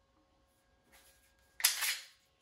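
Beretta M9A3 magazine being pulled out of the pistol's grip: a short scrape of about half a second near the end, after near silence.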